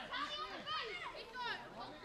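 Children's voices shouting and calling out over one another during a scrum of play.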